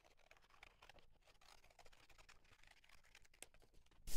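Near silence, with only a few faint soft ticks scattered through it.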